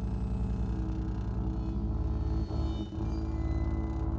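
Free-improvised music from a cornet, cello, double bass and drums quartet: low, sustained bowed-string tones held over a rapid, even pulsing in the bass. There is a brief dip in the sound between two and three seconds in.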